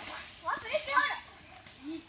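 Children's voices calling and shouting at a distance while they play in the water, with the loudest calls about half a second to one second in and a short one near the end.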